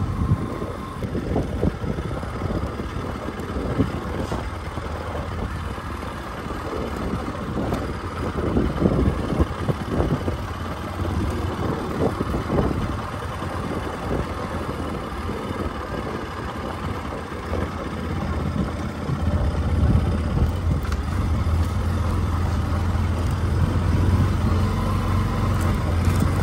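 Motor vehicle driving along a rough dirt road: continuous engine rumble and ride noise, with a low engine hum growing stronger in the last few seconds.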